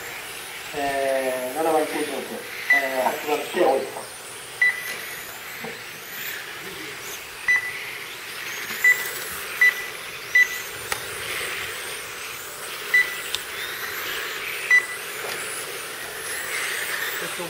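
Short, high beeps at irregular intervals, about eight of them, from a lap-counting system as radio-controlled touring cars cross the timing line, over the faint high whine of the cars' electric motors rising and falling as they pass.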